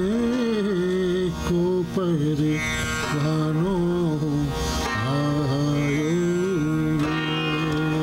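Sarangi playing a slow melody that slides between held notes, over a steady tanpura drone.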